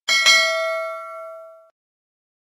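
Bell-chime sound effect: a bright metallic ding struck twice in quick succession, ringing with several tones and fading away within about a second and a half.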